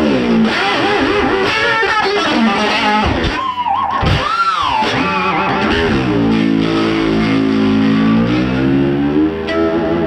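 1961 Fender Stratocaster electric guitar played through a 1964 Vox AC10 amp with an overdriven tone: a busy phrase, a note bent up and back down about four seconds in, then a held chord with vibrato.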